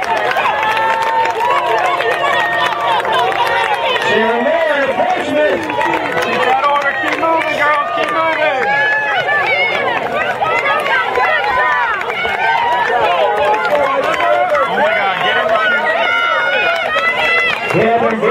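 Crowd of spectators shouting and cheering on runners in a cross country race, many voices overlapping without pause.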